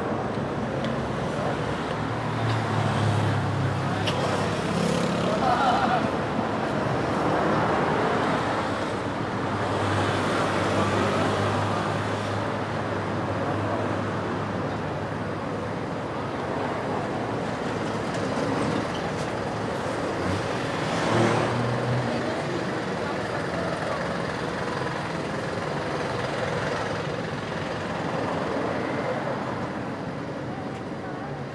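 City street ambience: steady road traffic with the hum of passing engines, one vehicle louder about two-thirds of the way through, mixed with the voices of people talking nearby.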